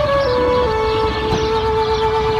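Intro music: a horn-like wind instrument holding long notes that step down in pitch, over a dense rumbling bed.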